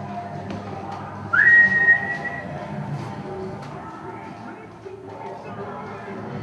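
A single loud whistled note about a second in, sliding up and then held for about a second, over music playing in the background.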